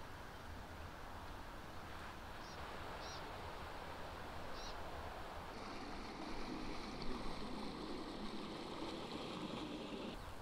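Faint engine of a small work boat passing on the river, a low rumble that comes in about halfway through over a steady outdoor hiss. A few short, high chirps sound in the first half.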